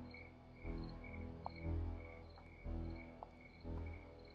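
Crickets chirping steadily in an even run, a little over two chirps a second, over low pulsing music that swells about once a second.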